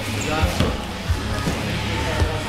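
Background music and voices in a gym, with a couple of dull thumps.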